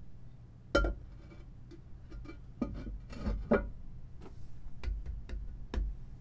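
Porcelain toilet tank lid being set back onto the tank: one sharp clink about a second in, then a series of lighter clinks and knocks as it is shifted into place.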